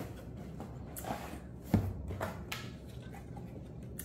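A small cardboard box being opened by hand: the lid is lifted and the card insert handled, with rustling and a few knocks, the sharpest and loudest a little under two seconds in.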